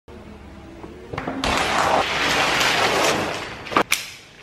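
Self-balancing hoverboard rolling over a tiled floor: a thump about a second and a half in, then a steady rushing noise, ending with a couple of sharp clicks.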